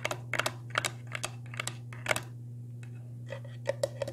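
Fingertips and nails tapping on the walls of an empty aquarium, irregular sharp taps for about two seconds, then after a pause a quicker run of light taps near the end.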